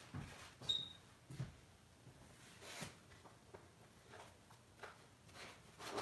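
Faint, scattered clicks and short rustles of trading cards being handled while someone searches through a box of cards, with the loudest rustle near the end.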